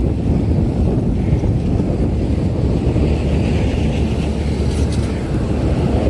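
Steady low wind rush on the microphone of a moving bicycle, mixed with the noise of road traffic passing alongside.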